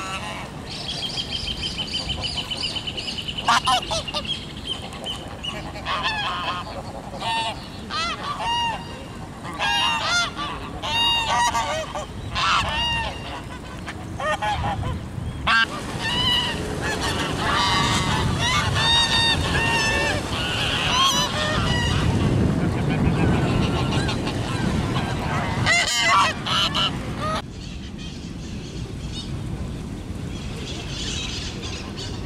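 Domestic geese honking, many short calls one after another and overlapping from several birds. They come thickest in the second half and die away near the end.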